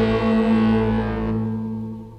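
The closing chord of a rock song: a distorted electric guitar chord held and dying away. Its bright top fades out about a second and a half in, and the level keeps falling.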